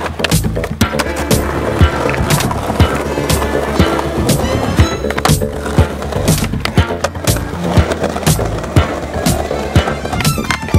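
Skateboards rolling on paving and concrete, with sharp clacks of boards popping and landing several times, over background music.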